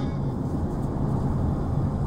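Steady low rumble of a car's engine and tyres, heard from inside the cabin as the car rolls up to a toll booth.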